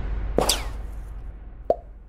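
Intro sound effects under the fading tail of a music sting: a quick swoosh about half a second in, then a single short pop near the end.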